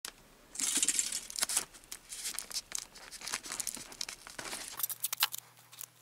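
Aluminium foil crinkling and rustling as it is folded and pressed by hand, with masking tape ripped off the roll near the end.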